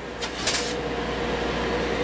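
A thin wooden sheet scraping and rustling as it is slid down off a high shelf, about half a second in. A steady machine hum with a faint constant tone runs underneath.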